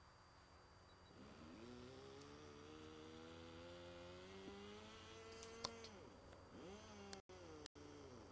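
Faint drone of a radio-controlled model plane's motor in flight, its pitch rising slowly for several seconds and then falling away as it passes, with a second short rise and fall after it. A single sharp click sounds about five and a half seconds in.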